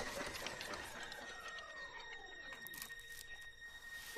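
Animated-film soundtrack: a faint, steady high tone held throughout, with a soft whistle-like glide that slowly falls in pitch over about two seconds.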